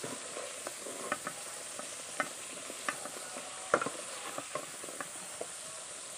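Potato pieces sizzling as they fry in hot oil in a metal pan, with a metal spatula scraping and clinking against the pan as they are turned; the loudest scrape comes about two-thirds of the way in.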